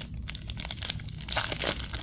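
The wrapper of a Topps Chrome baseball card pack being torn open by hand: a dense run of crinkling and tearing that grows louder in the second half.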